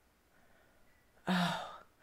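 A woman's short breathy sigh, briefly voiced and then airy, about a second and a quarter in, after a moment of near silence.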